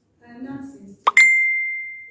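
A sharp click about a second in, then a single bright ringing ding, a clear pure tone that fades away over about a second, louder than the speech around it.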